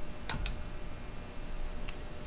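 A single brief, light clink of hard painting gear at the palette about half a second in, with faint room noise otherwise.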